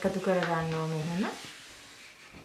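A held, drawn-out vocal sound lasting just over a second, then the faint scratch of a marker pen drawing a line across brown pattern paper.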